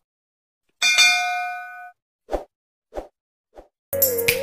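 A notification-bell sound effect from a subscribe-button animation: one bright ding that rings and fades over about a second, followed by three soft pops, each fainter than the last.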